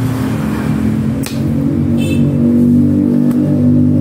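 An engine running steadily nearby, getting a little louder in the second half, with two sharp knocks, about a second in and near the end, from a large knife chopping into a young coconut's husk.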